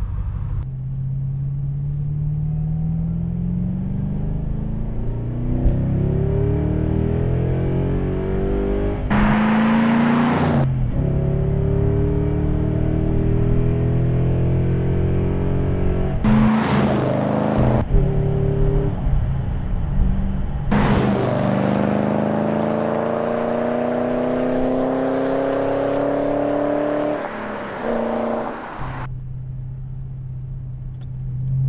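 Ford Mustang's engine accelerating hard through the gears, heard from inside the car: the pitch climbs in each gear, with a short burst of noise at each of three upshifts. Near the end the pitch falls back to a steady low running note as the car slows.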